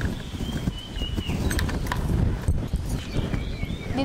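Wind rumbling on the microphone, with a few light knocks and a faint high whistle in the first half.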